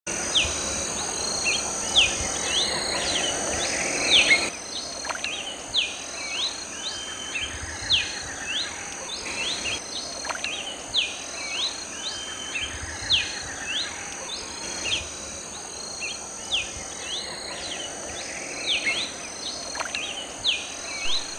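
Red-capped cardinal of the Bolivian subspecies (Paroaria gularis cervicalis) singing a long run of short, sharp whistled notes that sweep up and down, repeated over and over. A steady high insect buzz runs behind the song.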